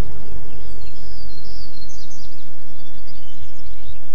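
Birds chirping in forest ambience: short high calls over a steady low rumble.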